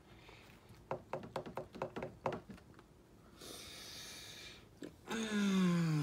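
Mouthful of hard bird seed crunching between the teeth in a quick run of sharp clicks, then a long breathy exhale and a falling groan from the man eating it.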